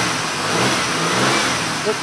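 Car engine being revved: its pitch and loudness climb to a peak about one and a half seconds in, then ease back down.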